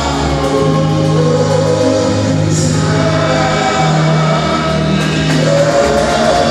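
Live gospel praise singing by several voices over a band, amplified through microphones, with long steady bass notes stepping from pitch to pitch about once a second.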